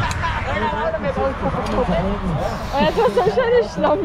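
Several people talking at once, voices overlapping into a babble with no clear words.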